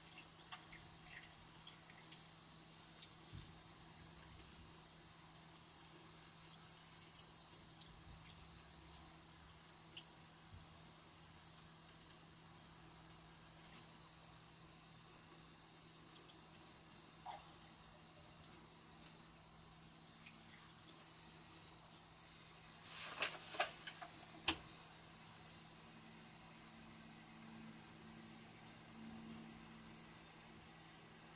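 Steady hiss with a faint low hum, and a few sharp clicks about three-quarters of the way through.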